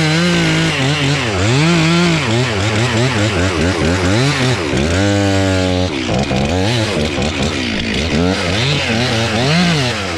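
Two-stroke gas chainsaw cutting into the base of a walnut trunk, its engine pitch repeatedly dipping and recovering as the chain loads up in the cut. About five seconds in it holds a steady higher pitch for a second, running free at full throttle, then drops back into cutting.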